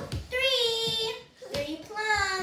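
A young child's high-pitched, wordless vocalizing: two long, wavering, sung-out sounds with a short break between them, over a few soft thumps.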